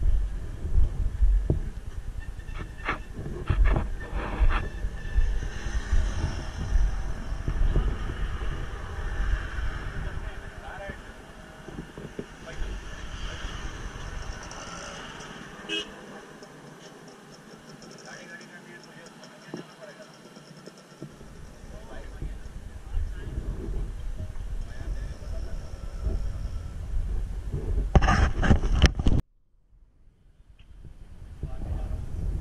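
Wind buffeting the camera microphone as a low rumble, with people talking in the background and a few knocks from handling; it cuts off suddenly near the end.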